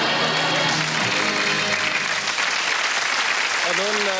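Studio audience applauding, with the tail of the sketch's theme music underneath; a man's voice begins near the end.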